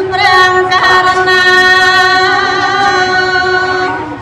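A woman singing Khmer smot, the unaccompanied Buddhist chanted song, into a microphone. She holds one long note with a wavering turn in its first second.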